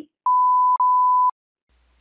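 Two back-to-back censor bleeps, each a steady pure tone about half a second long, blanking out the spoken digits of a phone number.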